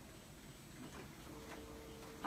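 Quiet room with a few faint clicks, joined about two-thirds in by a faint steady hum or tone.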